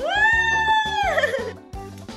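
A single high-pitched, drawn-out vocal cheer that rises quickly, holds for about a second and then falls away, over background music with a steady beat.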